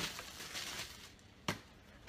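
Clear plastic bag packaging rustling and crinkling as it is handled, then one sharp click about one and a half seconds in.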